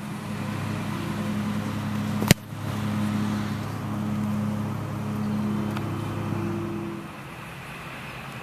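A single sharp thud about two seconds in: a football kicked off a kicking tee. Under it runs a steady engine hum from a motor vehicle, which fades out about a second before the end.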